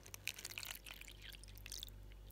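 Water poured in a thin stream into a small plastic water dish, giving a faint trickling splash.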